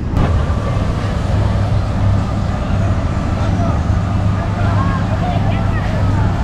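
Steady low drone of a boat engine running, over a constant wash of water and wind noise, with faint voices in the background.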